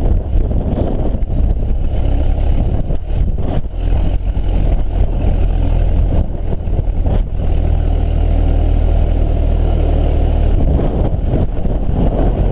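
Ford AA doodlebug's Model A four-cylinder engine running under way, a steady low rumble, with gusty wind buffeting the microphone.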